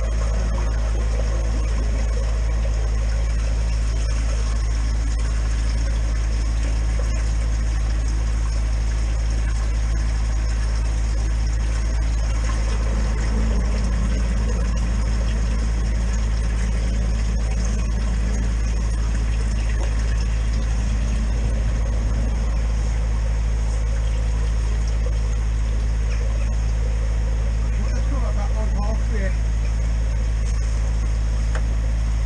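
Drain jetting unit's engine running steadily, a constant low hum, while its high-pressure hose works inside the drain to clear the blockage.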